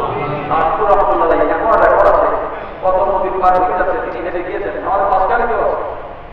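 A man preaching in Bengali into a microphone, in long drawn-out phrases with brief pauses between them.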